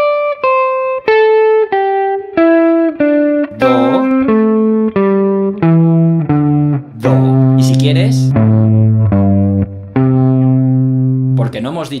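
SG-style electric guitar through an amplifier, picked one note at a time down the C major pentatonic scale in a diagonal three-notes-then-two-notes-per-string pattern, each note a step lower. It ends on the low C, with the last few notes held longer.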